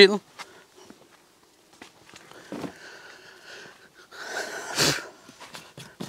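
Soft rustling of a sheepskin being handled and a hand brushing loose hair across a wooden table, with a short, loud, breathy rush of noise about four and a half seconds in.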